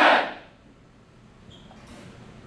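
A large group of soldiers shouting a chant in unison, the last shout cutting off about half a second in, followed by quiet room tone.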